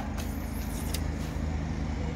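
A steady low mechanical hum of a running motor, with a couple of faint clicks.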